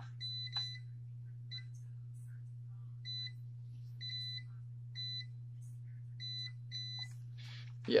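FLIR CM83 clamp meter's continuity beeper giving short high-pitched beeps, singly and in quick pairs, on and off as the test leads make and break contact with the wire. It responds quickly. A steady low hum runs underneath.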